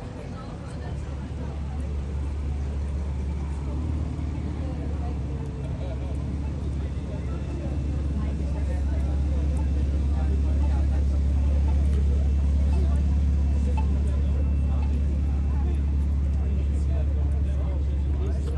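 Busy city street ambience: a steady low traffic rumble that grows louder over the first half, with the scattered voices of passers-by.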